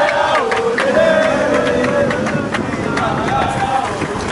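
A group of voices chanting a song together, with occasional drum beats.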